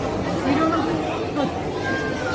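Indistinct chatter of several people talking at once in a food court, no words clearly made out.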